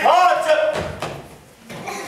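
A man's voice making a short wordless vocal sound whose pitch rises and then falls, followed about three-quarters of a second in by a dull thud.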